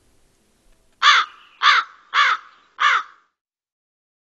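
A crow cawing four times in a row, starting about a second in, each caw harsh and short and a little over half a second apart.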